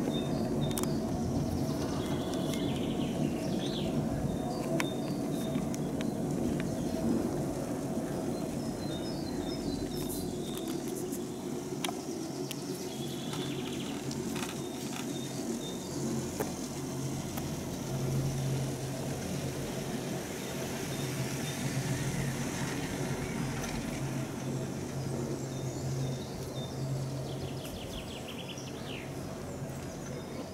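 Birds chirping over a steady low rumble and hum of a moving chairlift, with a few faint clicks along the way.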